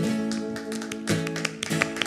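A live band's song winding down: a held chord with guitar, new notes coming in about a second in and a few light taps, the music gradually getting quieter.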